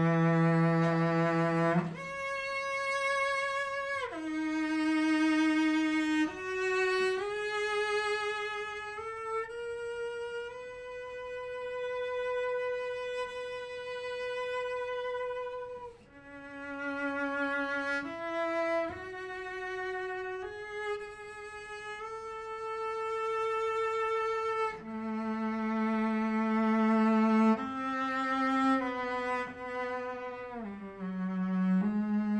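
A solo cello bowing a slow melody of long held notes, one note at a time, with a short break about halfway through.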